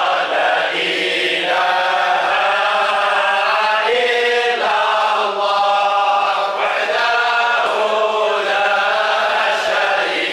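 A group of men chanting Sufi dhikr together in long, held phrases, reciting devotional verses from booklets.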